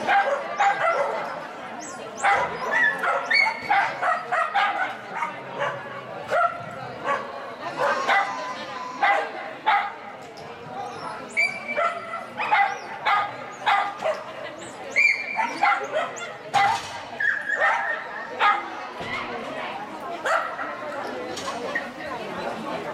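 Dog barking and yipping repeatedly in short, irregular bursts, over people's voices.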